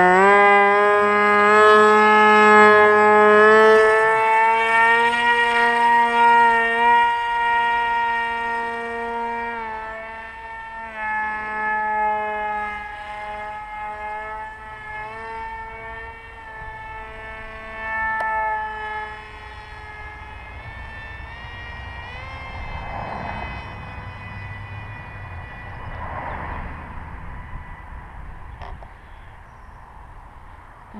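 Electric motor and 6-inch propeller of a small foam flying-wing RC plane running at full throttle: a high, steady whine that climbs as it spools up at launch, then fades over about twenty seconds as the plane flies away, its pitch wavering slightly.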